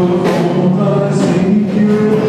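A group of voices singing a gospel worship song together with a live worship band of drum kit, guitar and keyboard.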